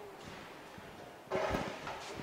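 Electric pallet turner being driven. Faint clicks, then from about a second and a half in a short burst of machine noise.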